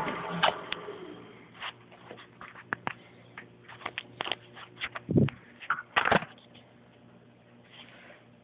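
Scattered light clicks and taps of handling at a benchtop metal lathe, with two duller low bumps about five and six seconds in.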